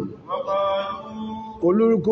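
A man's voice chanting Arabic Quranic recitation in a drawn-out melodic style, with a long held note in the middle and a falling phrase near the end.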